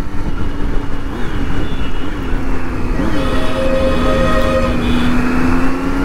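Triumph Street Triple's inline three-cylinder engine running at a steady cruise, heard from the rider's seat with wind rush on the microphone, its note climbing slowly in the second half. For about two seconds in the middle a second steady sound with several higher pitches is heard over it.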